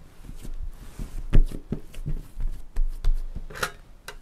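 Soft dough being handled and pressed on a stone countertop: irregular soft slaps, rubs and knocks of hands and dough on the hard surface, loudest about one and a half seconds in.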